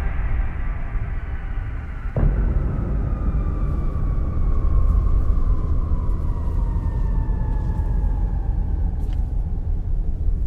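Trailer score and sound design: a deep, steady low rumble with a sudden hit about two seconds in, after which a single high tone slowly falls in pitch.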